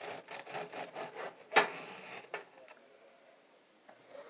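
A long kitchen knife sawing back and forth through a crisp-crusted loaf of homemade white bread, a run of quick rasping strokes, ending in a sharp tap about one and a half seconds in as the blade comes through onto the cutting board. A smaller knock follows, then it goes quiet.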